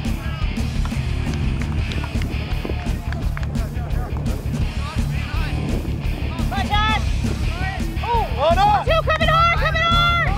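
Background music with a steady beat. A voice comes in over it in the second half and is loudest near the end.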